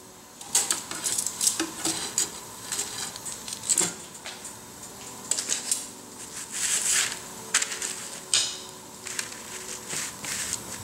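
A metal utensil clinking and scraping against a wire-mesh roasting rack and a flat griddle as a millet roti is lifted off the griddle and set on the rack over a gas flame: irregular light clicks and scrapes throughout.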